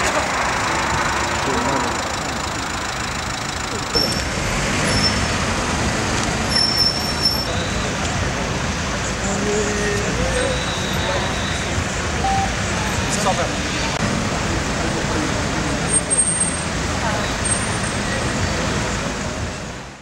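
Busy street ambience: traffic noise with indistinct voices in the background, changing abruptly about four seconds in.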